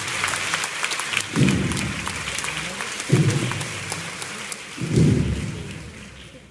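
Audience applauding, the clapping thinning out, while deep drum strokes sound three times, slow and evenly spaced about 1.7 s apart, each one the loudest thing and ringing out.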